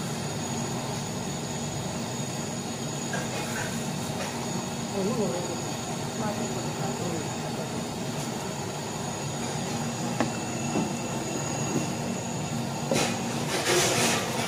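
Steady low rumbling noise around a large aluminium cooking pot, with faint voices in the background. Near the end, a metal ladle scrapes and knocks in the pot as the curry is stirred.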